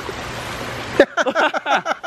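Water pouring from a plastic pitcher into a water-filled patio bowl, a steady splashing rush that cuts off suddenly about a second in.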